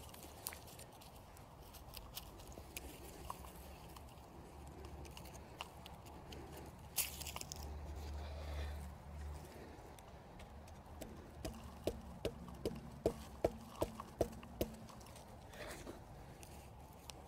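Faint crumbling and scraping of soil and roots as a dahlia tuber clump is worked loose by hand and lifted out of the bed, with a brief louder scrape about seven seconds in. Near the end, a run of light ticks, about two or three a second, as the lifted clump is handled.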